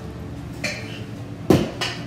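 Stainless steel mixing bowl with a metal spoon in it set down on a stone countertop: a sharp clank about one and a half seconds in, then a lighter knock just after.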